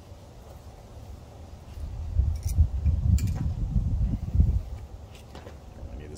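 A few light metallic clicks of needle-nose pliers working the wire clips on the air compressor motor's capacitor terminals, over a low, irregular rumble from about two seconds in to about four and a half seconds in.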